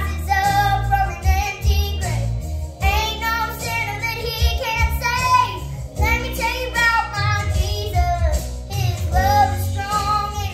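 A nine-year-old girl singing a Christian pop song over an instrumental backing track with a steady bass line.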